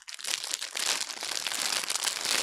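Sealed plastic bag crinkling steadily as hands handle it and work at it to get it open.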